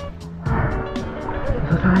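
Background music with a steady beat, a light tick about four times a second over held notes.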